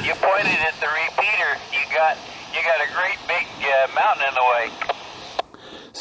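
The other operator's voice comes over a Yaesu handheld radio's speaker, relayed through a repeater about 30 miles away. It sounds thin and hissy. The hiss cuts off suddenly about five and a half seconds in, as the transmission ends and the squelch closes.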